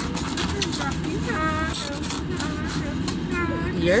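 Crinkling and clicking of a foam takeout container and plastic bag being handled, over a steady low hum in a car cabin, with bits of a person's voice in between.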